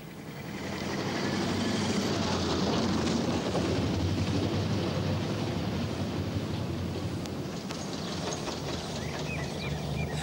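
Vintage open-top car's engine running as the car drives over cobblestones, with a rattling tyre rumble. The sound swells over the first second or so and eases a little near the end.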